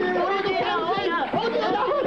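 Several cartoon voices shouting together at once, overlapping, in an Arabic dub.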